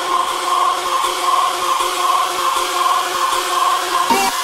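Hardstyle track in a breakdown: loud, sustained, noisy synthesizer chords held steady, with no kick drum.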